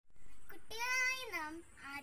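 A child's voice singing or drawing out one long held note that slides down in pitch about halfway through, followed by a couple of shorter syllables.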